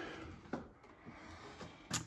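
Quiet room tone with two faint clicks, one about half a second in and a sharper one near the end.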